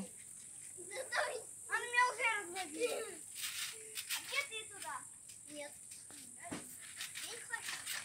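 Young girls' voices calling out faintly as they play on a small garden trampoline, with light clicks and a single thump about six and a half seconds in.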